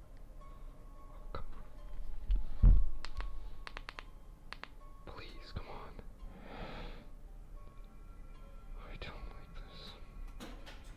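A deep, heavy thump about two and a half seconds in, followed by a quick run of sharp clicks, over a low rumble and quiet eerie music; a man whispers nervously in between.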